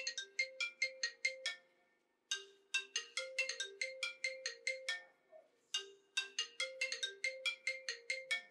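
Mobile phone ringtone: a quick marimba-like melody in short repeated phrases over low held notes, with brief gaps between the phrases.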